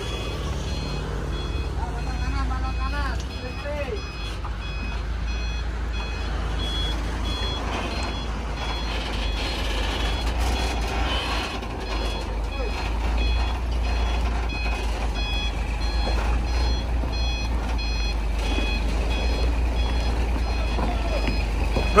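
Tractor-trailer truck's reversing alarm beeping repeatedly in short high beeps over the steady low running of its diesel engine as the rig is manoeuvred.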